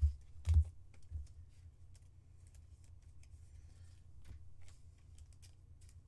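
Clear acetate trading cards handled in the hands: scattered light plastic clicks and ticks as the cards slide against one another, with a louder knock about half a second in, over a low steady hum.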